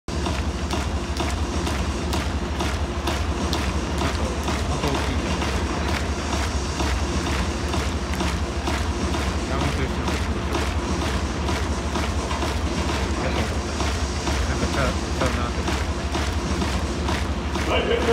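Crowd chatter in an indoor domed baseball stadium, with a steady low hum and a faint regular ticking beat running through it.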